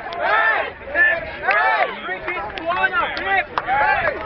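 Young boys' voices calling out over one another as the teams shake hands, with a few sharp hand slaps in the second half.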